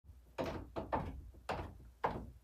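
Footsteps coming down wooden stairs, a separate thud on each tread, four in about a second and a half.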